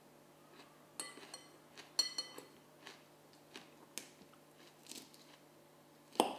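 Metal cutlery clinking and scraping against a bowl, with two ringing clinks about one and two seconds in and quieter taps after them, along with chewing.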